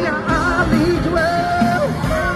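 Live Bollywood pop song played by a band through a concert PA, with a voice singing and holding one long note from about a second in.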